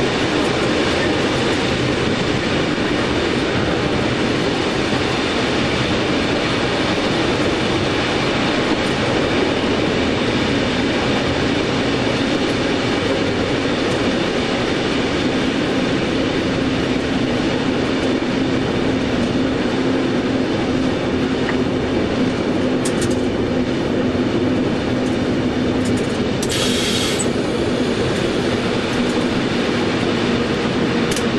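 Nohab diesel locomotive heard from inside its cab while hauling a heavy clinker train: a steady engine drone mixed with the running noise of the wheels on the track. A brief hiss comes about 27 seconds in.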